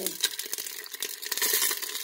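Chicken thighs sizzling in a little oil at the bottom of a stainless steel pressure cooker, with irregular crackles and pops as they start to brown.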